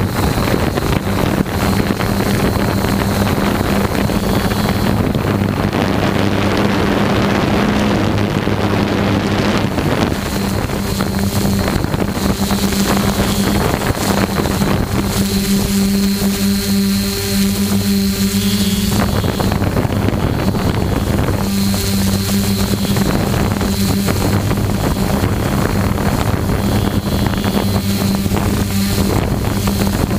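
Quadcopter drone's electric motors and propellers humming steadily close to its onboard microphone, with a thin high whine over the hum and wind noise on the mic.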